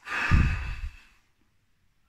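A man sighing: one loud breath let out, lasting about a second.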